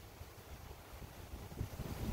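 Faint wind buffeting the microphone, with low rumbling gusts that grow stronger near the end.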